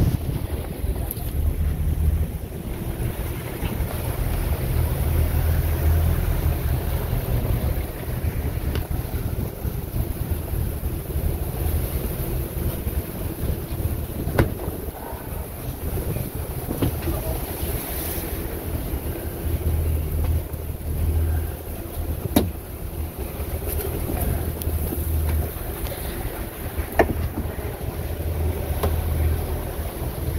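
Sportfishing boat's engine running with a steady low hum, under wind buffeting the microphone and water rushing past the hull, with a few sharp knocks.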